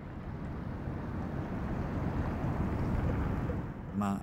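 Low, steady road and engine noise of a Volkswagen car being driven, heard inside its cabin; it grows a little louder through the first three seconds and eases near the end.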